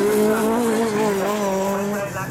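Autograss Class 9 special race cars running flat out on the grass track. One engine holds a steady note that sags slightly toward the end, with a hiss in the first second or so.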